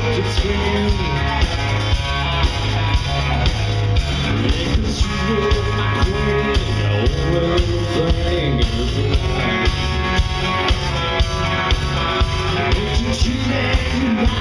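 Live rock band playing: acoustic guitars strummed over a drum kit keeping a steady beat with cymbals.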